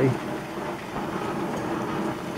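Steady hiss of a gas torch flame with a cutting tip, played on the workpiece to bring it up to temperature for silver soldering.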